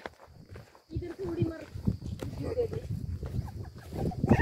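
Faint voices talking at a distance, with footsteps on a dry dirt track and a low rumble underneath.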